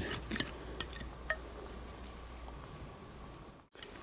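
A few light clicks and clinks of small hard objects in the first second or so, over a faint low rumble that fades out; the sound cuts out briefly near the end.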